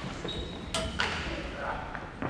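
A climber hauling himself over a steel gallery railing: a short high ping, then a sharp knock with a brief metallic ring, and a second knock.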